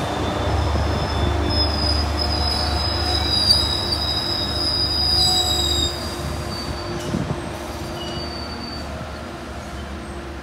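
Metrolink bilevel passenger coaches rolling past on steel rails, with a steady low rumble and high-pitched wheel squeal for the first several seconds. The sound grows fainter toward the end as the train moves on.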